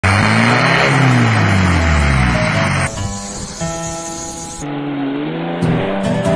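Vehicle engine revving hard through an upright exhaust stack, the revs falling and rising, then the sound cuts abruptly about three seconds in to other short clips of engines running at steadier revs.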